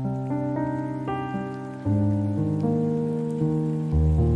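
Instrumental background music: a run of sustained keyboard notes over a deep bass note that steps lower and louder about two seconds in.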